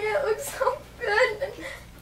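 A girl's voice whimpering and sobbing in an acted, mock-tearful confession, trailing off after about a second and a half.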